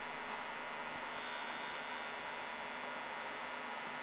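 Quiet, steady electrical hum and buzz with hiss from a running 1949 Emerson 611 vacuum-tube television. A single faint click comes about a second and a half in.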